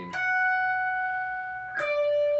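Schecter electric guitar playing a lead line: a pull-off right at the start drops from a high note to a lower one that rings on for about a second and a half. Near the end, a new, lower note is picked and held.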